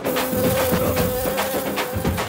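Housefly buzzing at one steady pitch, as a film sound effect, over a rhythmic percussive music score.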